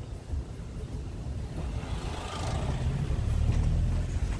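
A motor vehicle running, a low steady rumble that grows louder about halfway through.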